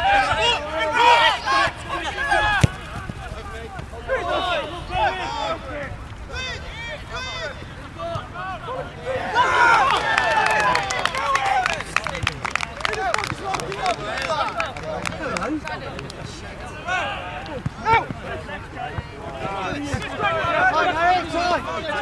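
Footballers shouting and calling to each other across an open grass pitch during play, the loudest burst of calls about nine to twelve seconds in. A single sharp knock sounds about two and a half seconds in.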